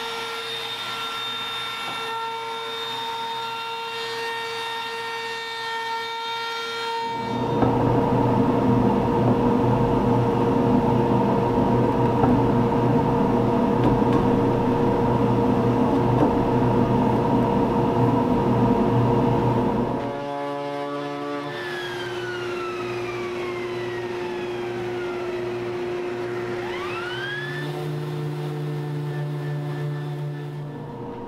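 Woodworking power tools. A trim router runs with a steady high whine, then a much louder stretch of machining noise lasts about twelve seconds. After that the sound drops back, with tones gliding down in pitch, and a random orbital sander hooked to a dust hose starts up near the end.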